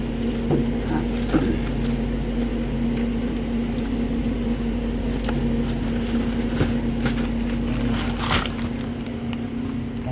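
Steady hum of supermarket freezer cabinets, with a few faint knocks and a brief rustle about eight seconds in as a glass freezer door is opened and a pizza box taken out.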